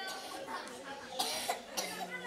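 A quiet pause in a hall, broken by two short coughs a little over a second in.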